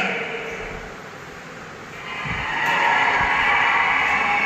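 Indistinct ambient sound of a large gathering: blurred voices and crowd noise that dip for a moment and then swell up from about halfway through, with a couple of low thumps.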